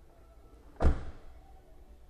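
A car's rear split seatback folding down and landing flat with a single thump a little under a second in.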